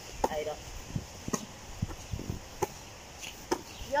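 Hands slapping a ball as two players volley it back and forth, one sharp hit roughly every second.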